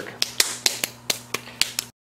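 Lump of wet potter's clay being tapped between the hands into a ball: a quick run of soft slaps, about five a second, that cuts off suddenly near the end.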